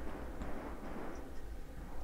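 Faint, steady low-pitched background noise with no distinct shots, clicks or other events.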